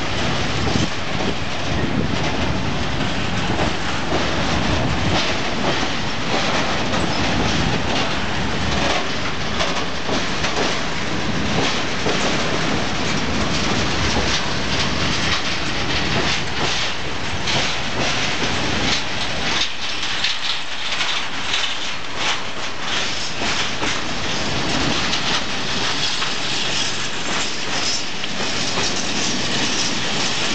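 Freight wagons of a long train rolling across a steel truss railway bridge: a steady loud rumble with dense clattering of wheels on the rails. The low rumble thins about two-thirds of the way through while the clatter carries on.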